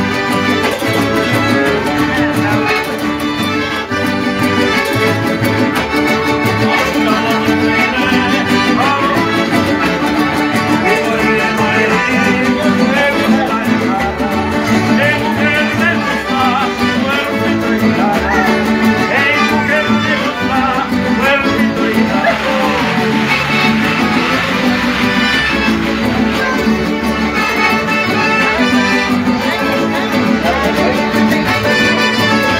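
Live folk dance music from a street band of strummed guitars, with a melody line over a steady dance rhythm and wavering voices singing in places.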